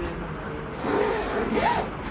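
A zippered comforter-set bag of clear plastic and quilted fabric rustling and scraping as it is handled and set down on a plastic stool, louder in the second half.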